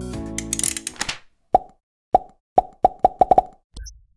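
Background music with a rising bright flourish ends about a second in, followed by a string of about eight short popping sound effects that come faster and faster.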